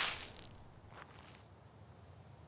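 A push-broom stroke across gravel, with a small metal object ringing briefly as the broom strikes it. Two faint scrapes follow about a second in.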